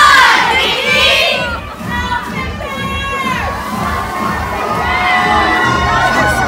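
A crowd of girls' voices shouting and cheering together, many at once, with high-pitched whoops that are loudest in the first second or so.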